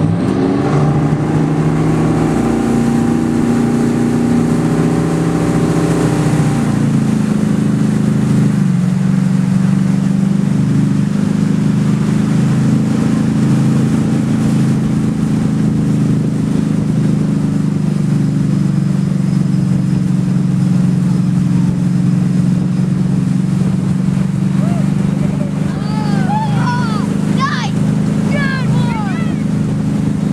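Motorboat engine towing a wakeboarder. It climbs in pitch over the first several seconds as the boat accelerates to pull the rider up, then runs steadily at towing speed.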